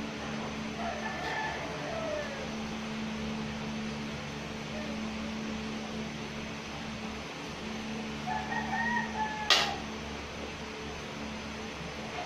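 A rooster crowing twice, about a second in and again at about eight seconds, over the steady hum of an electric fan. A single sharp click comes at the end of the second crow.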